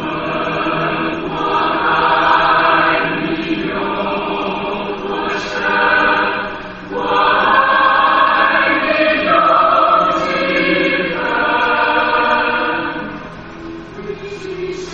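Background music track of a choir singing sustained phrases, with short breaths between phrases about halfway through and near the end.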